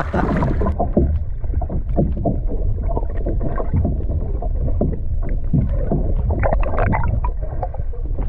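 Muffled underwater sound of churning, bubbling sea water as a swimmer kicks behind a kayak: a steady low rumble with many short, irregular swishes. The sound goes muffled just under a second in, as the microphone goes under the surface.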